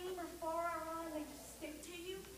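A woman's voice speaking to children, with long drawn-out vowels.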